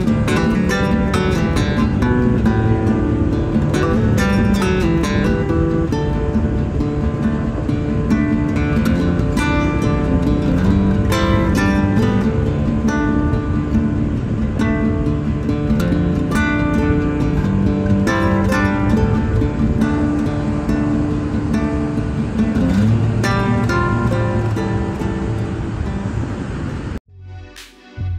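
Background music led by strummed acoustic guitar, cutting off suddenly about a second before the end.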